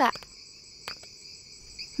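Crickets chirring steadily, with one faint click about a second in.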